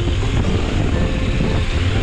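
Adventure motorcycle riding down a wet gravel road: a steady low engine and road rumble under wind noise on the microphone.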